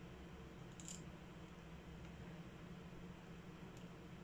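Faint handling of small screws being started into a hard drive's circuit board, with two light clicks, about a second in and near the end. A low steady buzz runs underneath.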